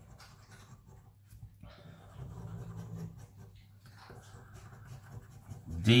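Coin scraping the coating off a lottery scratch card in short, soft scratching strokes. A faint low, hum-like sound comes in around the middle.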